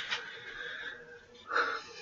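A person breathing out audibly close to the microphone, a breathy, wheezy exhale, with a short louder breath about one and a half seconds in.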